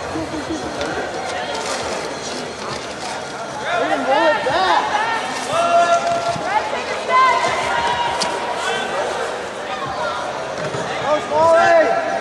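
Indistinct shouted voices calling across a rugby pitch over a background of crowd chatter, with several loud, drawn-out calls from about four seconds in and again near the end.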